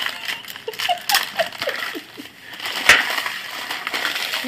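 Plastic wrap crinkling and crackling as it is peeled off a sticky gummy candy pizza, with one sharp, louder crackle about three seconds in.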